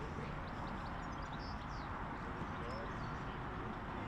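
Steady outdoor background noise at a training pitch, with a few faint high chirps and faint distant voices.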